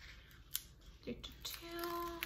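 Paper sticker sheet being handled and stickers peeled from their backing: crinkling and rustling paper, with a sharp click about half a second in.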